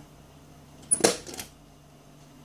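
A single sharp click about a second in, with a brief high-pitched ring, as the power switch of a valve RF signal generator is turned on.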